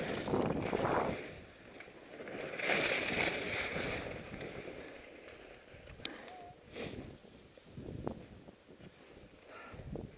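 Skis scraping and chattering across bumpy, hard-packed snow through a series of turns. The noise comes in surges, the two loudest in the first four seconds, then smaller ones with a few short clicks.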